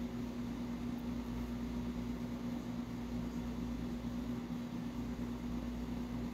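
A steady low hum over a faint even hiss, with no change in pitch or level and no distinct events.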